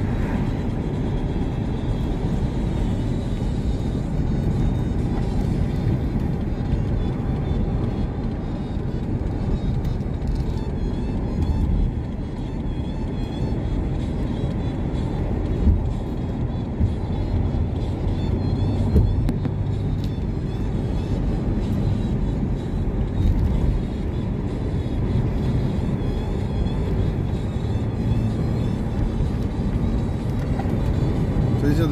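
Steady road and wind noise inside a moving car with the windows rolled down, mostly a low rumble. A few brief louder bumps come through along the way.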